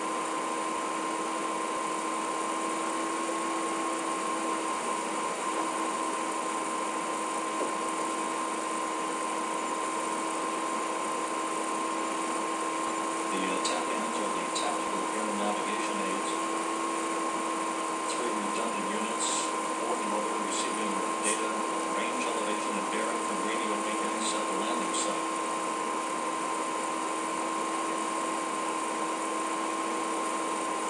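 A steady hiss with a constant electronic whine of several fixed pitches runs through the live broadcast audio feed. About halfway in, faint indistinct voices and a few sharp clicks come through for roughly ten seconds.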